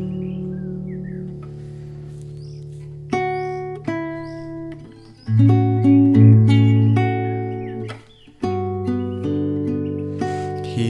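Acoustic guitar playing an instrumental passage: a chord rings and fades, then new plucked chords and notes come in about three seconds in, with short breaks near five and eight seconds.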